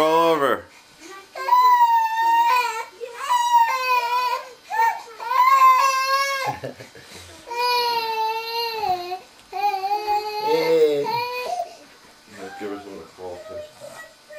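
Baby crying in a series of long, high, wavering wails, tailing off into softer broken whimpers near the end.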